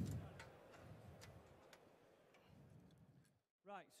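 A few faint clicks of metal hookover brackets being clicked onto a solar-panel mounting rail, over a quiet background that fades out near the end.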